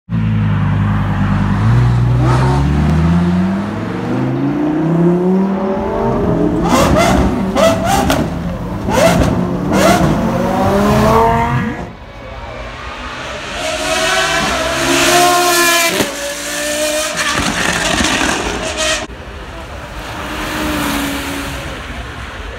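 A high-performance car engine accelerating hard, its pitch climbing and dropping back through several gear changes, with sharp cracks around the shifts. After about twelve seconds it drops to a quieter, wavering engine note.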